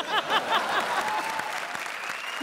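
Studio audience applauding in response to a joke, with short pitched voice sounds over the clapping in the first half second.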